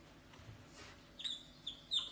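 Faint, high-pitched squeaks of a marker pen on a whiteboard, coming as a few short strokes in the second half.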